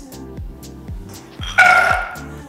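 Roasted hazelnuts tipped from a bowl into a stainless steel saucepan of hot dry caramel: a loud, brief clatter with a ringing tone about a second and a half in. Background music plays throughout.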